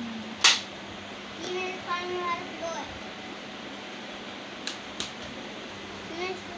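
A sharp, loud noise about half a second in, then a child's voice briefly, and two small clicks near the end, all over a faint steady hum.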